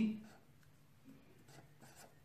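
A spoken word trails off at the start, then a felt-tip marker makes a few faint strokes on paper.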